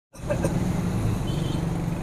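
A motor vehicle's engine running steadily, a low hum under outdoor street noise.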